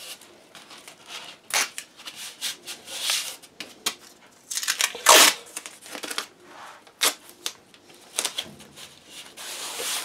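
Masking tape being pulled off the roll and torn into strips, with a hand rubbing the strips flat: several short tearing sounds, the loudest about halfway through, between softer rubbing.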